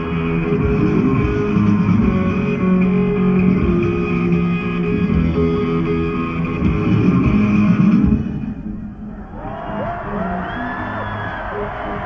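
Live electric rock band: guitar, bass and drums playing loud and dense. About eight seconds in the band drops back and an electric guitar plays a run of bent notes that rise and fall in pitch.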